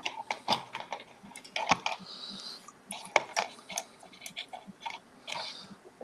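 Irregular light clicks and taps, a few a second, of small hard objects handled at a desk.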